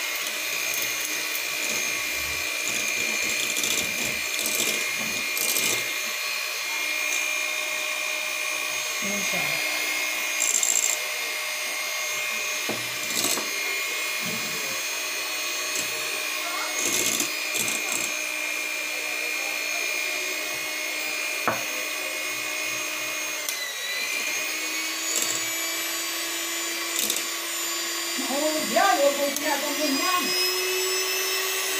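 Electric hand mixer running steadily with its beaters whisking a cream mixture for ice cream in a bowl. It gives a constant motor whine. About three-quarters of the way through, the pitch dips briefly and then settles slightly higher as the speed changes.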